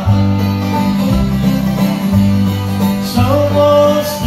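Live bluegrass band playing an instrumental passage on banjo, fiddle, guitar and upright bass, the bass moving to a new note about once a second.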